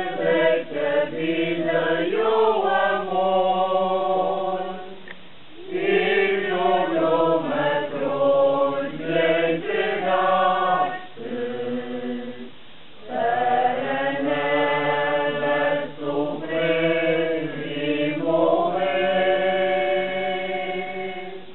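A small group of voices singing a slow, unaccompanied religious hymn from song sheets at a stop of a Lenten Passos procession. The hymn moves in long held phrases, with short breaks about five seconds in and again from about eleven to thirteen seconds.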